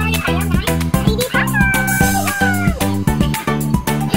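Background music with a steady beat and plucked guitar, over which a cat meows once, a long call that rises, holds and falls off about a second and a half in.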